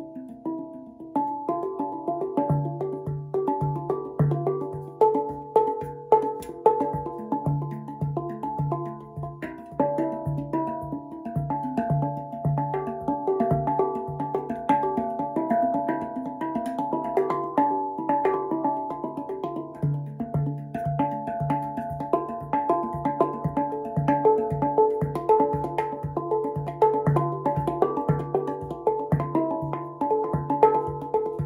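Steel handpan played with the fingertips: a repeating pattern of ringing tuned notes over a low note struck steadily about twice a second, starting a couple of seconds in.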